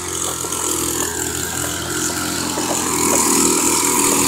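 An engine-driven machine running steadily, a continuous mechanical drone that grows a little louder about three seconds in.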